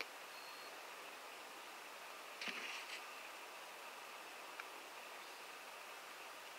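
Quiet dusk air with a steady faint hiss. A short high chirp comes near the start, and a brief louder sound follows about two and a half seconds in, as the birds settle for the night.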